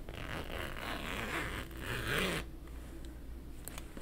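Zipper on a fabric mini backpack being pulled in two rasping runs, the second shorter and louder, ending about two and a half seconds in.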